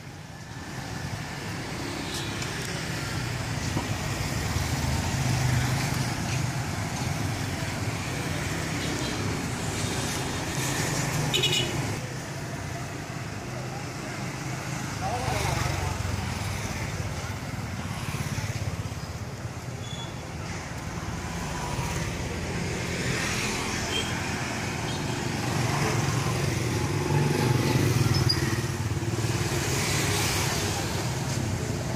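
Street traffic of small motorcycles and scooters passing one after another, their engines swelling and fading as each goes by, with people talking in the background.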